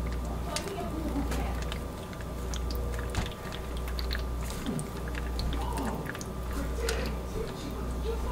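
Wet squishing and scattered small clicks of a hanger swirl tool being drawn through thick soap batter in a loaf mold, over a steady low hum.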